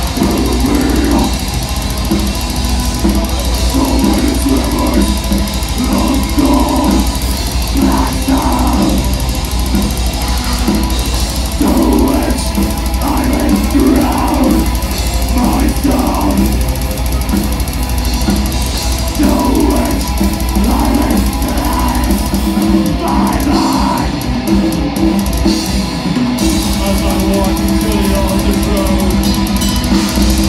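A live heavy metal band playing loudly with amplified electric guitar, bass guitar and drum kit, heard from the audience in a small venue.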